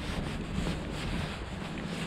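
Wind buffeting the camera microphone outdoors: a steady low rumbling noise.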